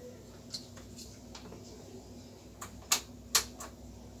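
A few light plastic clicks and knocks from handling a CRT television's power plug and front-panel controls, the two loudest close together about three seconds in, over a faint steady room hum. No power-supply sound or degauss thump comes from the set: it is dead.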